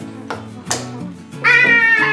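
A small rubber-faced mallet tapping a wooden wedge into a mallet handle's joint, a few light taps, over guitar background music. About one and a half seconds in, a loud high-pitched cry takes over.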